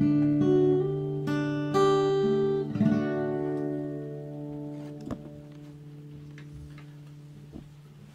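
Acoustic guitar playing the closing notes of a song: a few plucked notes in the first three seconds, then the final chord left to ring and slowly fade away.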